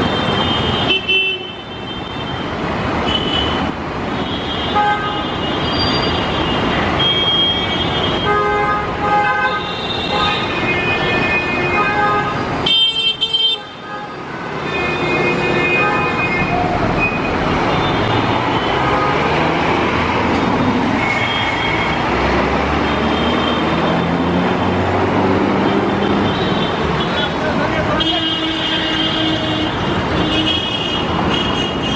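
Busy city road traffic with frequent short horn toots. About halfway through, a Scania coach's engine climbs in pitch as it accelerates past.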